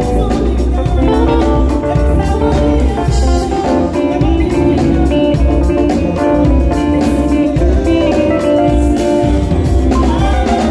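A live band playing a Ghanaian gospel highlife groove, led by an Epiphone Les Paul Special II electric guitar played through a Fender combo amp. The groove is steady, with a heavy low end and a regular percussive beat.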